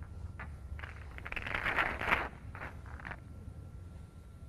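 Snooker balls being handled as the colours are re-spotted between frames: a few light clicks, with a louder rustling rattle of balls for about a second near the middle.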